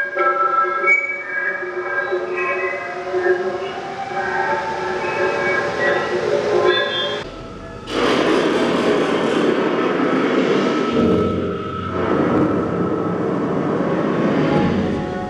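Sound-art piece played through a vibrating blue tarp cube installation: several held tones shifting in pitch for about seven seconds, a brief dip, then a dense noisy rumble from about eight seconds in.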